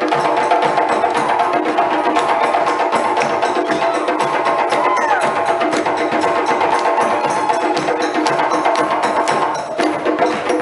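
West African drum ensemble, djembes and dunun bass drums, playing a fast, dense rhythm, with steady ringing tones running through it and a short falling pitched sound about halfway through.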